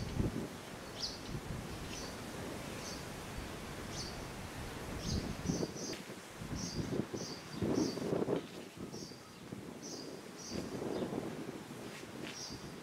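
Outdoor ambience: a small bird chirping over and over in short, high calls, with low gusts of wind on the microphone, strongest about eight seconds in.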